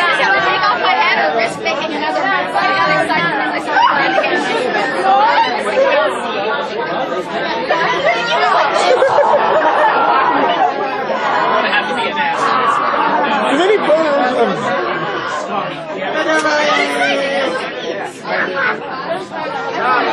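Many people talking at once: loud, overlapping chatter of a crowd of voices.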